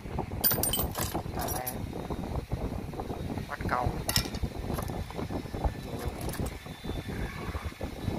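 Loose used Honda Cub bolts, nuts, washers and springs clinking and rattling against each other in a plastic tub as a hand rummages through them, in many quick irregular clicks.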